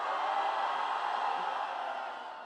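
A large crowd cheering and screaming, swelling at the start and dying away near the end.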